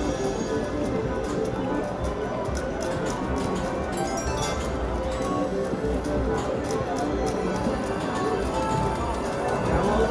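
Siberian Storm video slot machine playing its game music and reel-spin sounds through repeated spins, with frequent short sharp clicks over a steady bed of tones.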